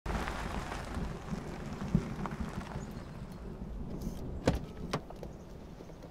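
Car pulling up with its engine running low, then two sharp clicks about half a second apart as its door is unlatched and swung open.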